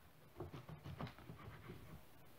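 Knife slicing through a soft roll of cocoa Turkish delight on a wooden cutting board: a faint run of soft irregular knocks and scrapes as the blade cuts and meets the board.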